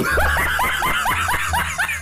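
A young woman laughing hard in quick repeated bursts, about six a second.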